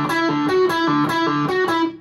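Electric guitar through an Orange amplifier playing a riff of short repeated notes, accented in groups of five against a 4/4 pulse. The riff stops right at the end.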